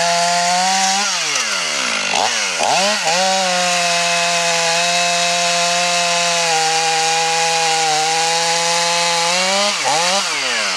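Stihl MS 500i fuel-injected two-stroke chainsaw running at high revs while cutting into a thick beech trunk. About a second in, the engine note falls and climbs back twice, then holds steady in the cut until it dips again near the end.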